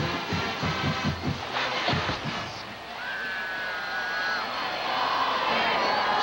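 Stadium crowd cheering with band music over it: rapid drum beats for the first couple of seconds, then a long held high note about halfway through.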